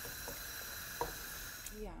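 Steady hiss of a pot of water at the boil on a gas hob, with a few faint splashes as dumplings are dropped into it one at a time.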